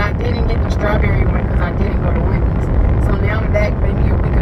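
A woman talking over a steady low rumble inside a car cabin.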